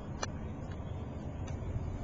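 2005 Ford F-150 engine idling, a steady low rumble heard inside the cab, with a single light click about a quarter of a second in.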